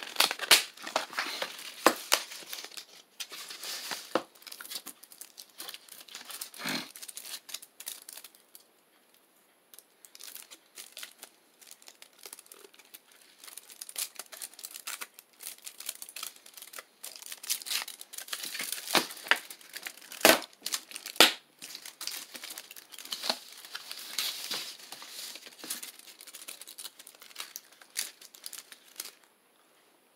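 Chocolate bar wrapper being opened by hand, with irregular crinkling and tearing that comes and goes and a quieter spell in between. A couple of sharp snaps come about twenty seconds in.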